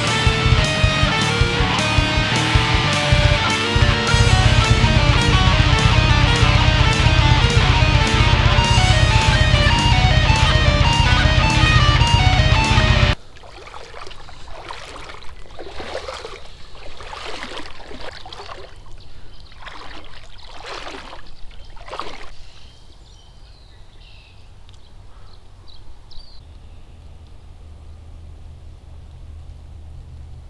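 Loud guitar music that cuts off suddenly about thirteen seconds in. It is followed by several seconds of splashing as someone wades through shallow water, then quieter outdoor background.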